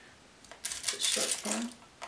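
Metal straight pins clicking and rattling as a few are taken from a pin dish, in quick clusters from about half a second to a second and a half in.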